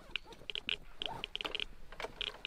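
Rapid, irregular dry clicking, several clicks a second at uneven spacing.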